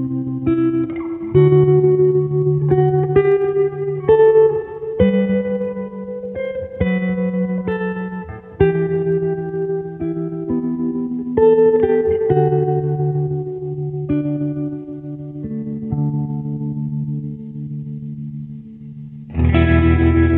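Guitar music: a slow line of plucked single notes and chords, each left to ring. A louder, fuller chord comes in near the end.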